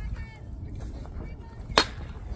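A baseball bat hitting a pitched ball: one sharp crack near the end.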